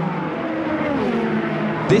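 A pack of Hypercar prototype race cars running flat out in a group, their engine notes falling slightly in pitch and then holding steady.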